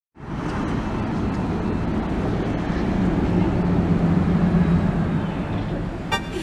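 City street traffic noise with a vehicle engine's low hum, swelling to a peak about four to five seconds in and then easing off.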